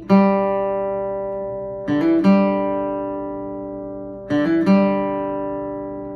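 Mahogany acoustic guitar picked three times, about two seconds apart, each note left to ring and fade. The second and third come as a quick pair of notes: a hammer-on on the D string's second fret, then the open G string.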